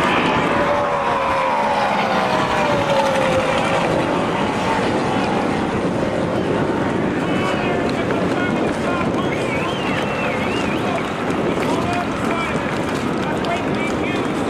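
A racing tunnel boat's engine whine passes and falls steadily in pitch over the first few seconds, then fades under a bed of spectator voices and wind noise.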